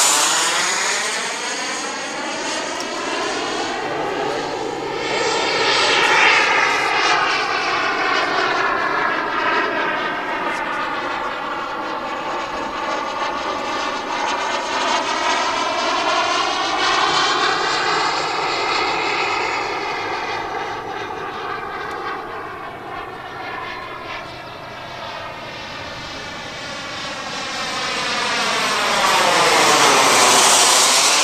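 Skymaster F-4 Phantom RC jet's twin turbine engines whining in flight. The sound swells and fades several times as the jet passes closer and farther away, and is loudest near the end.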